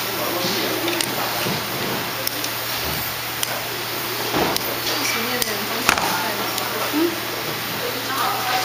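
Busy assembly-floor ambience: distant voices talking over a steady electrical hum, with a few sharp clicks scattered through.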